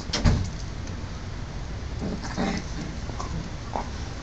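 A dull thump just after the start, then softer scuffing sounds and a few small clicks as a dog noses at a cooked pork trotter lying on concrete.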